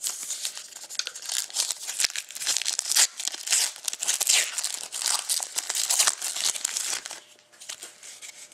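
Foil wrapper of a Panini Titanium hockey card pack crinkling and tearing as it is opened by hand, dying down about seven seconds in.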